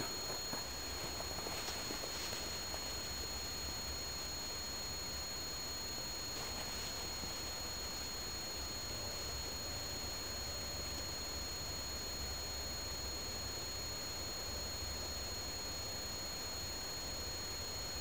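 Quiet outdoor background: a steady low rumble with two faint, steady high-pitched tones, and a few faint soft scuffs in the first seven seconds.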